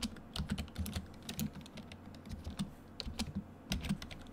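Typing on a computer keyboard: irregular key clicks in short clusters with brief gaps between them.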